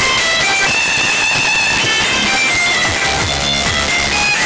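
Music played at very high volume through a van's competition sound system of twenty Stronder 5K2 loudspeakers driven by Stetsom Force One amplifiers, a high melody over it, with heavy bass coming in about three seconds in.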